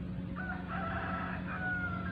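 A rooster crowing once: a single call of about a second and a half that ends in a long held note. A steady low hum runs underneath.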